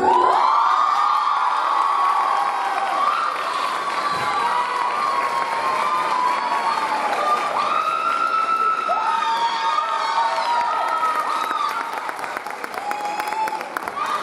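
Audience cheering and screaming, with long high-pitched shouts and whoops. Scattered clapping joins in near the end.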